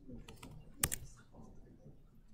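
Computer keyboard typing: a few quiet keystrokes, with one sharper key press a little under a second in, as a command is typed and entered.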